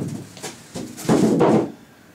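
Styrofoam packing scraping and squeaking as it is handled, in two bursts: a short one at the start and a longer one about a second in.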